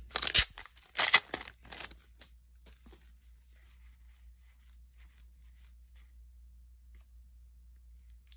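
A foil booster-pack wrapper being torn and crinkled open by hand, in loud crackling bursts over the first two seconds. After that there is only faint rustling of the cards being handled.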